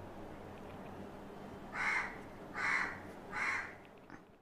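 Three short bird calls in quick succession, evenly spaced about three-quarters of a second apart, over a faint steady low hum.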